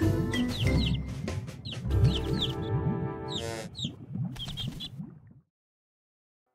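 Cartoon music with a baby chick's repeated short, high, falling peeps over it. Everything fades to silence shortly before the end.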